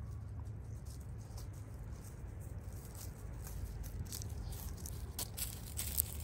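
Light crackling and rustling of dry leaves and grass as a dog comes up close, thickening in the last couple of seconds, over a steady low rumble.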